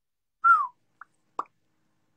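Live-stream audio dropping out to dead silence, broken by a short falling whistle-like tone about half a second in and two brief blips after it.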